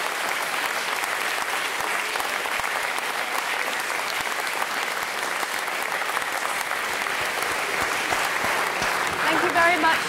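A large audience applauding, a steady, dense clatter of many hands clapping at once. A voice comes up over the clapping near the end.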